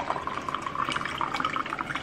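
Water poured in a steady stream from a jug into a glass tumbler, splashing onto pre-workout powder. The filling note rises slightly as the glass fills.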